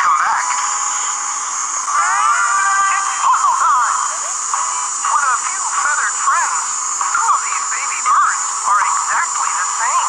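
Children's TV programme audio: background music with a voice over it, and a rising sliding tone about two seconds in.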